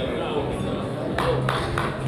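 Murmur of voices in a hall, then scattered hand claps from a few people starting a little over a second in.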